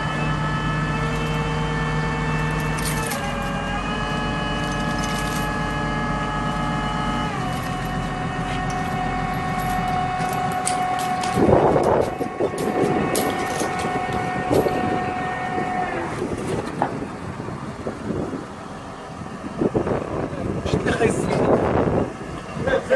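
Mobile crane's diesel engine running at raised revs to work the hoist. Its pitch steps down twice and then falls away about sixteen seconds in. A loud burst of noise comes about halfway through.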